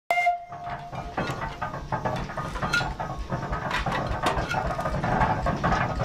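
A 1908 steam donkey logging engine working, with irregular clanks and knocks from its machinery over a steady rush of noise. A brief pitched whistle tone sounds right at the start.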